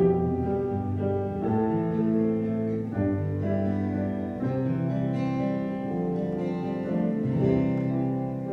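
Acoustic guitar played solo, a slow tune of held notes and chords that change about once a second.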